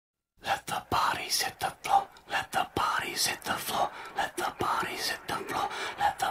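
Whispering voice in quick, choppy breathy bursts, several a second, with a few sharp clicks among them. It starts after a brief silence.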